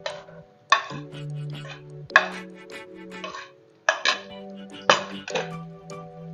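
Background music with sustained notes, over several short clatters of a utensil against a plate and a non-stick wok as carrot strips are pushed into the pan.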